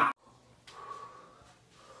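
Quiet room after a sound cuts off abruptly at the very start, with a faint, brief human vocal sound about a second in.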